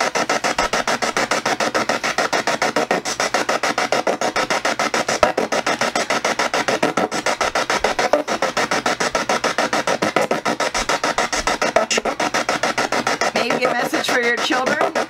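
A spirit box sweeping rapidly through radio stations: loud, choppy static that steps many times a second, with brief snatches of radio sound between the steps.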